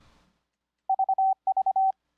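Morse code sidetone beeping the letter V twice (dit-dit-dit-dah, dit-dit-dit-dah) on a single steady tone, starting about a second in.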